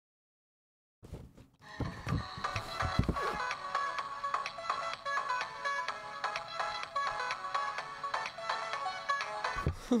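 Electronic song playing from a toy doll's 'try me' sound button, held up close to the microphone. It starts about a second and a half in and runs on with an even beat.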